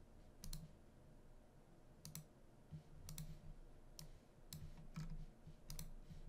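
About half a dozen faint, scattered clicks of a computer mouse, some in quick pairs, over near silence.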